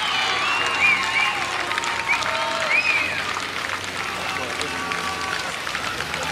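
Race spectators shouting and clapping, with several short, high-pitched yells that rise and fall in the first half over a steady noise of the crowd.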